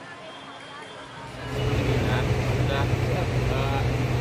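A vehicle engine running steadily close by, a loud low drone that comes in suddenly after about a second, with several people talking over it.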